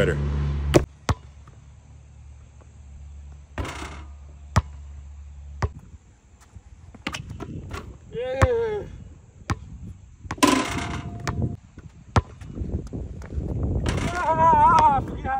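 Basketball bouncing on a hard outdoor court: single sharp bounces, spaced a second or more apart, between dunks. There is a short shout or grunt about eight seconds in.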